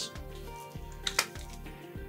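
Quiet background music, with a couple of light clicks from a receipt paper roll being dropped into a handheld payment terminal's printer compartment.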